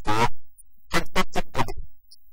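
A man's voice, garbled and choppy, cutting in and out with abrupt gaps, a broken-up, scratchy audio feed.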